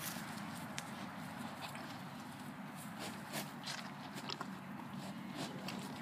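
Calves mouthing at an orange held out by hand and shuffling their hooves on dry grass, heard as scattered light clicks and rustles over a steady outdoor hiss.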